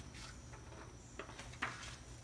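Quiet background of faint, steady insect chirring, crickets at night.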